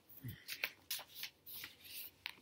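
A picture book's paper pages rustling as a page is turned: a few soft, short papery scrapes.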